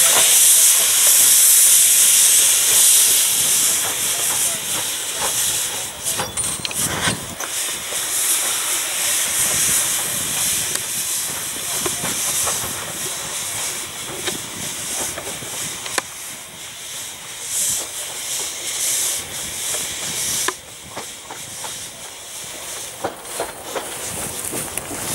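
A narrow-gauge steam locomotive moving off slowly with its cylinder drain cocks open: a loud steam hiss, strongest for the first few seconds and then easing off, with a few sharp knocks scattered through it.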